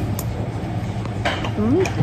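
Cutlery and dishes in a restaurant over a steady low hum: a light click just after the start and a short clatter a little past a second in. Near the end a voice gives a short rising "mm" while tasting food.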